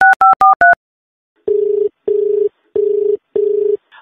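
Touch-tone telephone keypad beeps as the last digits are dialled, then a short pause and four pulses of a steady ringing tone in two pairs: the ringback heard down the line while the called phone rings.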